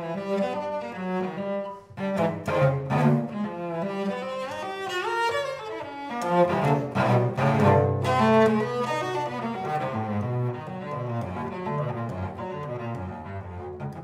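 Solo cello played with the bow, unaccompanied: sharp, loud chords in the first few seconds, then quick running passages and a held low note, with the playing growing quieter toward the end.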